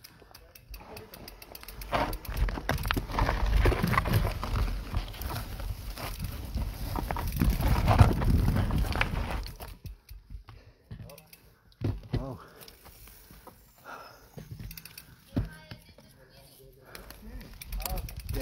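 Mountain bike rolling over a rough dirt trail, heard through a handlebar-mounted camera: a steady rumble with rattles and knocks, loudest in the first half. It then eases to a quieter stretch with scattered clicks.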